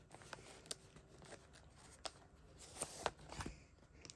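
Faint rustle and light clicks of cardboard baseball cards sliding against a plastic binder pocket page as a card is drawn out of its sleeve, with a few slightly louder ticks near the end.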